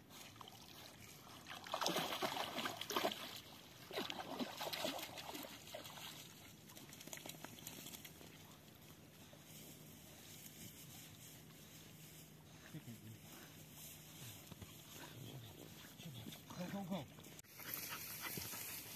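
Australian Cattle Dog swimming with a toy in its mouth: faint sloshing of water as it paddles, louder for a moment about two and four seconds in.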